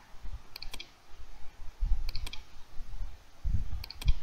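Computer mouse clicks, a few in quick pairs, as the healing brush is applied in Photoshop. Two dull low thumps fall between them.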